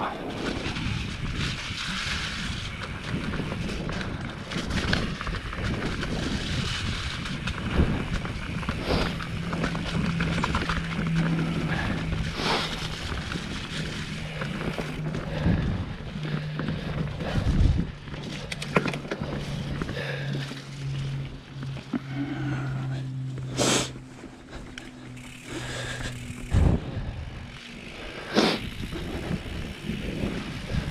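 Mountain bike riding over a dirt forest singletrack: tyre and trail noise with wind on the microphone, broken by frequent knocks and rattles as the bike goes over bumps and roots. A low steady hum runs through the middle and steps lower in pitch a few times before fading near the end.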